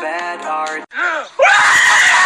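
A song with synth music stops abruptly just under a second in. A man's voice gives a short rising-and-falling yell, then a loud, drawn-out anguished scream.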